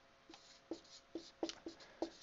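Marker writing on a whiteboard: about half a dozen faint, short strokes as letters are drawn.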